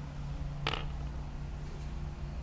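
Steady low machine hum, with one short sharp noise about two-thirds of a second in.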